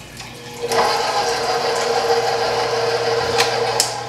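Electric stand mixer switched on about a second in, its motor running with a steady whine, then switched off just before the end.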